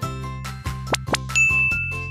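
Light children's background music, with two quick rising swish effects about a second in, followed by a single high ding chime held for about a second. The chime marks the new paint colour appearing.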